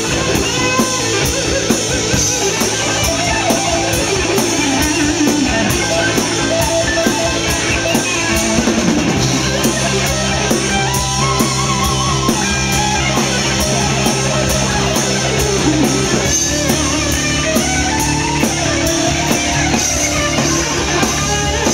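Live rock band playing loudly: a Fender Stratocaster electric guitar plays lead lines with bent notes over a drum kit keeping a steady cymbal beat. A heavy, sustained low part comes in about nine seconds in.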